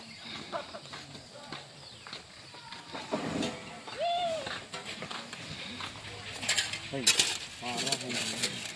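Voices of a group of people calling out, with one drawn-out rising-and-falling call about four seconds in. Near the end come a few sharp clatters, then a man exclaims "Oh, my God."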